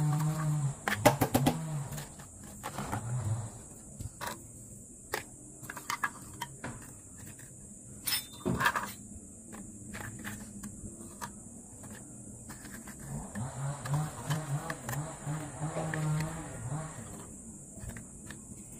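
Chunks of charcoal dropped by hand into a plastic bottle, clicking and clattering against the plastic and each other in scattered taps. A low voice is heard briefly at the start and again for a few seconds near the end.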